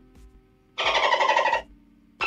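A dolphin chattering sound effect: one short burst of rapid, high-pitched chatter, starting about a second in and lasting under a second.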